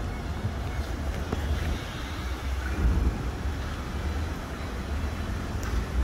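Steady low rumble of outdoor vehicle noise, with no distinct event standing out.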